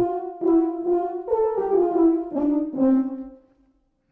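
Native Instruments Valves sampled euphonium ensemble, true legato patch, playing a short phrase of about six slurred notes that rise once and then step downward, the last note fading out near the end.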